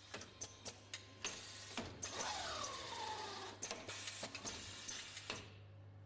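Jakob Müller VWA 203 bandage-winding machine running: irregular clicks and knocks from its mechanism over a steady low hum. About two seconds in, a falling whine sweeps down over a second or so, and the sound drops away just before the end.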